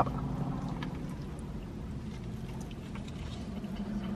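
A man chewing a bite of burger with faint mouth clicks, over the steady low rumble of a car cabin.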